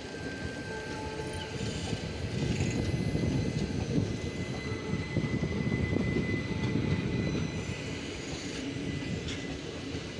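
Coaches of a departing express train rolling past on the adjacent track, wheels running over the rails. The rumble builds about two seconds in, is loudest through the middle and eases near the end, with a faint thin high whine over it.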